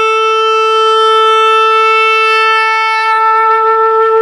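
Selmer Series III (pre-Jubilee) tenor saxophone with an Otto Link Super Tone Master mouthpiece playing one long held note, a slight vibrato coming in near the end.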